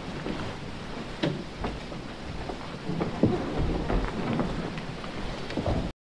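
Room noise of scattered soft knocks and rustling over a low rumble, with one sharper knock a little past the middle. The recording cuts off abruptly just before the end.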